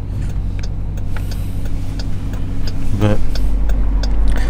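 Car interior noise while driving: a steady low rumble of the engine and tyres on the road, heard from inside the cabin.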